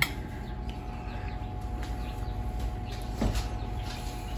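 Steady low room hum with faint high chirps, a click right at the start and a brief louder sound a little after three seconds.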